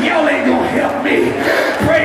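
A preacher shouting into a handheld microphone through the hall's PA in drawn-out, pitched calls, with the congregation calling out around him.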